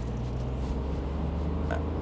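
The Opel Crossland's 83 bhp 1.2-litre three-cylinder petrol engine running as the car drives off, heard from inside the cabin as a steady low drone with tyre noise. A short click comes about three-quarters of the way through.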